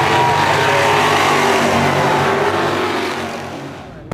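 Sportsman stock car engines running hard as the cars race around the track. The sound is loud and steady, then fades away over the last second.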